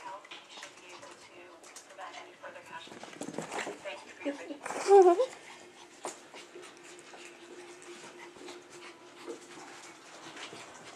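A dog and a puppy playing with a rope toy: scuffling and light clicks of paws and toy, with one short whimpering cry falling in pitch about five seconds in, the loudest sound here.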